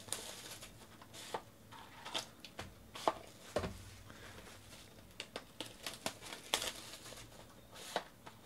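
Plastic shrink wrap crinkling and a cardboard trading-card box being handled, giving irregular light crackles with a few sharper taps.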